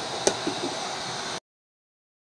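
Glass pot lid with a metal rim clinking against a metal cooking pan: one sharp clink followed by a few lighter knocks over a steady hiss. The sound stops abruptly about a second and a half in.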